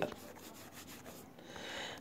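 Faint rubbing of a stylus drawn across a tablet's screen in a few quick strokes, underlining handwritten notes.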